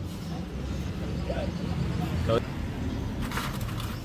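A steady low hum of an idling engine, with faint background voices and a few light clicks near the end.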